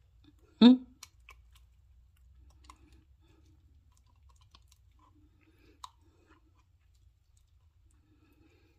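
A brief hummed 'hmm', then faint scattered clicks and soft crinkling from a clear plastic funnel of soap batter squeezed and worked by a gloved hand, with one sharper click about six seconds in.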